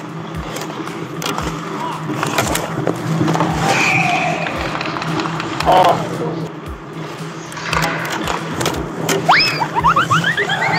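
Ice hockey skate blades scraping and carving on the ice around the net, with sharp clacks of sticks and puck. Near the end come a few quick rising squeals.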